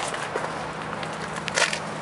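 An RV's exterior storage compartment door being lifted open, with a sharp click about one and a half seconds in, over a faint steady hum.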